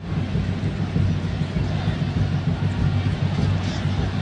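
Steady low rumble of stadium crowd noise, with little of the higher crowd sound or voices coming through.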